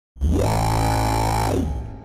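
A short electronic musical sound effect, about a second and a half long: a sustained chord-like drone with one tone that swoops up near the start and back down before it fades.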